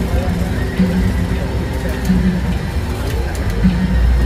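Steady low rumble of a moving bus's engine and road noise heard from inside the cabin, under music and faint voices playing in the background.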